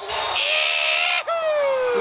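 A man's long, high-pitched yell, held on one note for about a second, then falling in pitch toward the end.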